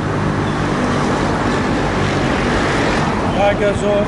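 Street traffic: a steady rush of road noise, growing a little in the middle as a vehicle goes past, with a man's voice briefly near the end.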